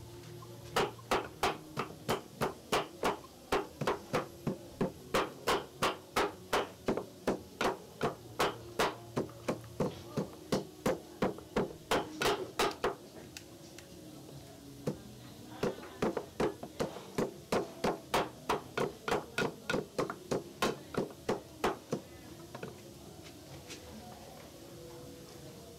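Wooden pestle pounding in a carved wooden mortar: steady, sharp knocks at about two to three a second, stopping for about three seconds near the middle, then starting again.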